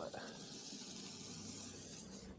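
Raw hamburger patties sizzling on a hot disc griddle: a steady, soft, high hiss.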